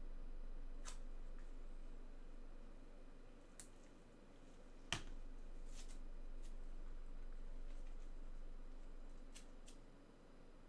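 A few light, scattered clicks and taps from items being handled on a tabletop, with one sharper click about five seconds in, over a low steady room hum.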